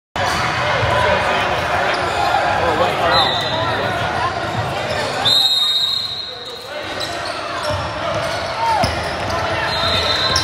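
Gym crowd chatter with a basketball bouncing on the court, and a referee's whistle blown briefly about three seconds in and held longer around five seconds in.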